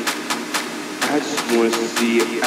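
House/techno track playing over a club sound system: a steady beat of sharp hits about four a second, with a repeated chopped vocal sample over it that drops back briefly and returns about a second in.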